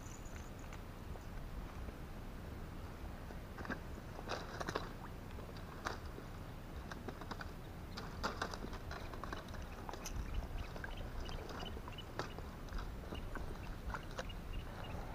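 Faint, irregular crackles and small clicks of close handling movement in wet grass and shallow water, a little busier about four and eight seconds in.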